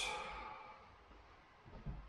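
A tired man's sigh: a breathy exhale that fades away over the first half-second. A brief low sound follows near the end.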